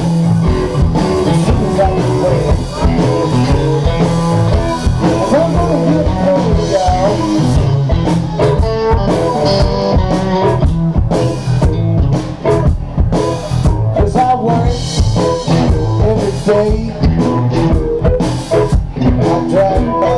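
Live blues-rock band playing: electric guitars, electric bass and drum kit over a steady beat.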